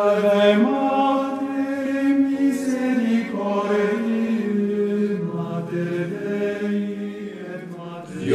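Sung chant: a voice holding long notes, the melody moving slowly up and down in small steps with no words spoken over it.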